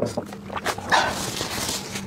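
Close-miked mouth sounds after a drink: a wet swallow click at the start and a few small lip and tongue clicks, then a breathy exhale from about a second in.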